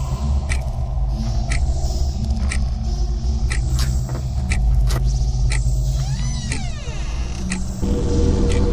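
Suspense film score: a deep, steady rumbling drone under sharp ticks about once a second. A brief sweep rising then falling in pitch comes near the end.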